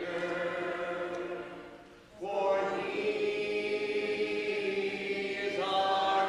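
Congregation singing a hymn a cappella in four-part harmony, with no instruments. A held chord fades out, and after a short breath a new phrase enters about two seconds in and is held as a long chord, moving on again near the end.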